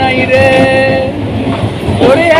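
Electric multiple-unit local train running along the track, heard from the open doorway of a coach. A short steady tone is held for under a second near the start, then a rumbling running noise follows.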